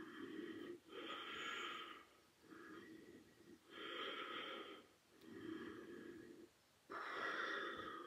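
A woman's slow, faint breathing as she holds a core-strengthening yoga pose with her legs lifted: about six audible breaths in and out, each lasting roughly a second, with short pauses between.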